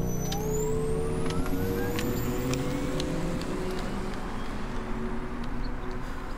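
A car driving off: its engine rises in pitch as it speeds up over the first few seconds, then settles into a steady rush of road noise.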